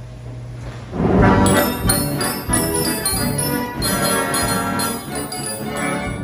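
Wurlitzer Style 165 band organ starting to play about a second in after a steady hum, its pipes sounding with bells ringing over them and a regular drum beat.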